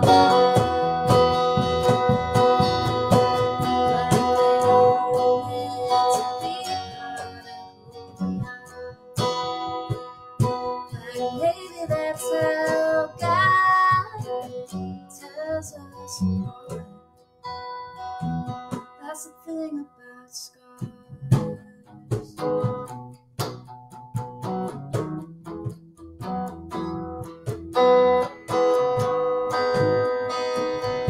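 Live band music from guitar and bass guitar, plucked and strummed, with no words heard. It thins out briefly about halfway through, then picks up again.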